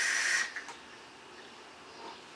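Steady airy hiss of a long draw through an e-cigarette's atomizer, cutting off about half a second in, followed by faint room tone while the vapour is let out quietly.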